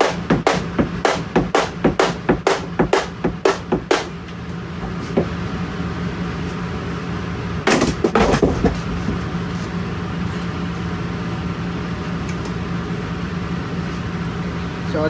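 Rapid knocking on a flat-pack particleboard cabinet panel, about three knocks a second for the first four seconds, as the misaligned panel is worked loose; a second short burst of knocks comes just past halfway. A steady low hum runs underneath.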